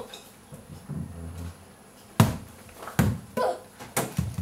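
A small ball bouncing on a hardwood floor: two sharp hits a little under a second apart, after softer low thuds earlier.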